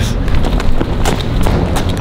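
Footsteps on a concrete floor: a quick, irregular run of thumps and knocks.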